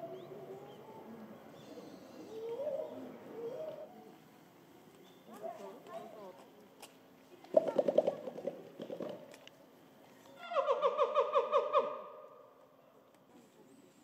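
Western lowland gorilla chest-beating: two quick runs of beats about eight a second, the second lasting over a second with a ringing pitch to each beat, with people's voices in the background.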